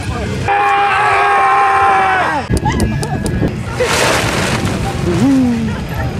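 A person's voice holding one long note for about two seconds, followed by a few sharp clicks and a brief rush of noise. Low wind rumble on the microphone throughout.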